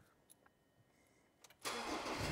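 A few faint clicks, then about a second and a half in the ute's engine starts up and settles straight into running.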